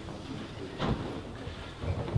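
Background noise of a crowded room, a low uneven rumble, with one short sharp noise about a second in.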